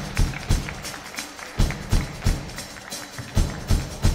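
Live band of three electric bass guitars, keyboard and drum kit playing together: sharp drum hits several times a second over a steady bass line.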